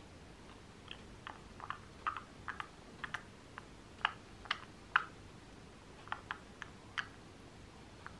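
Green-cheeked conure eating thawed peas with its beak, making faint, irregular wet slurps and small clicks, two or three a second, with a couple of louder ones about four and five seconds in.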